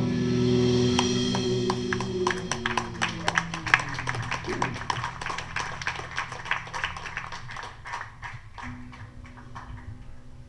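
The band's final chord rings out and fades over the first few seconds while audience applause builds, heard as many separate handclaps, which thins out near the end.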